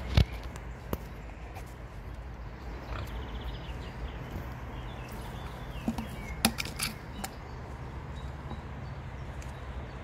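Plastic bottle enrichment feeder being handled and shaken by a gibbon: a few sharp knocks and clatters, with the loudest cluster about six and a half to seven seconds in.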